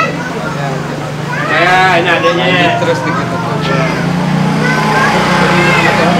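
A man speaking close to the microphone, with a steady low engine hum underneath that grows louder about four seconds in.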